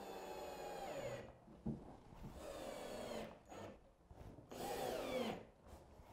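Ryobi One+ cordless drill driving screws into a concealed door hinge: three short runs of motor whine, the pitch dropping at the end of each as the screw seats.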